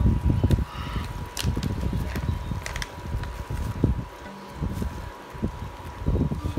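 Handling noise: the phone rubbing and bumping in the hand as a seasoning packet is picked up and rustled, with a few sharp clicks and a faint steady high tone throughout. The rumbling is loudest in the first half.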